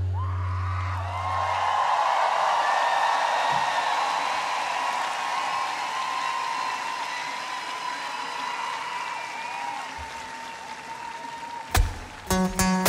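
Large open-air concert crowd cheering and applauding after a song, the cheering slowly dying down. A low sustained note from the stage fades out in the first two seconds, and acoustic guitar strums start just before the end.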